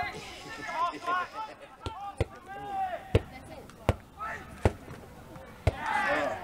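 Voices calling out on an outdoor football pitch, with about six sharp knocks at uneven intervals in the second half.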